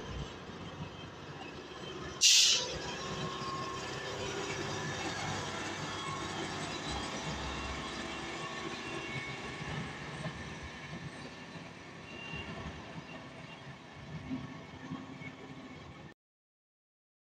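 Heavy trucks driving past, with steady engine and tyre noise rising and falling as they go by, and one short, loud hiss about two seconds in.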